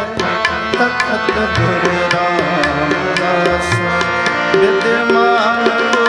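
Kirtan music: tabla strokes keep a steady rhythm under sustained harmonium chords, with a melody line bending in pitch toward the end.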